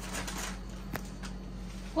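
Cloth garments being handled and shifted, a dry rustling with a sharp click about a second in and a few lighter ticks after it.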